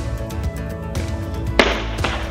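Background music, with one sharp thud about one and a half seconds in as a medicine ball is set down on the rubber gym floor.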